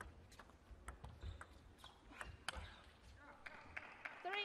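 Table tennis rally: the plastic ball clicking off the rackets and the table in quick, irregular succession, faint.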